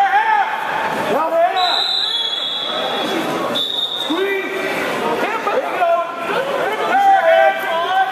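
Voices of spectators calling out in a large gymnasium. A steady high tone is held for over a second about a second and a half in, and sounds again briefly at about three and a half seconds.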